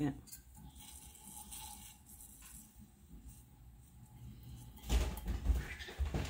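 Quiet room with faint handling sounds from working a plastic cup and tumbler by hand. Near the end comes a louder, low rumbling bump lasting about a second.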